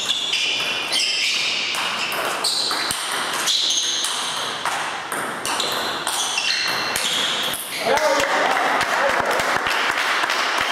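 Table tennis rally: the celluloid ball clicks off the rubber bats and bounces on the table in quick succession, with sneakers squeaking on the parquet floor. The rally ends about eight seconds in and a loud voice follows.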